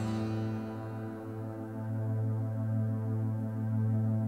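Closing of a song: a low keyboard chord held steady, with a slight pulsing in it.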